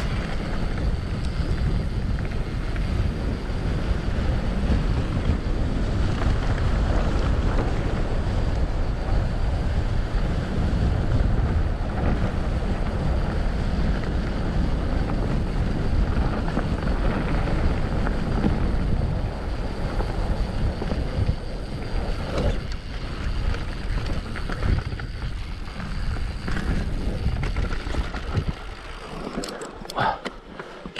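Wind rushing over the camera's microphone as an Orbea Rallon enduro mountain bike descends a grassy track at speed, mixed with the rolling noise of its tyres and rattling from the bike. It eases a little near the end as the bike slows.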